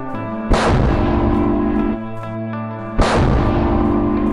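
2S4 Tyulpan 240 mm self-propelled heavy mortar firing: two sudden heavy blasts, about half a second and three seconds in, each trailing off over the following second or two.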